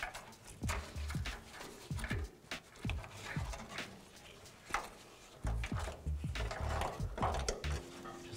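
Wiring harness in plastic corrugated loom being pushed by hand through a hole under a pickup's body: a string of short scrapes, rubs and taps of plastic against metal, with a few dull knocks near the end.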